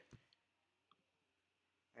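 Near silence: quiet room tone with two faint, short clicks.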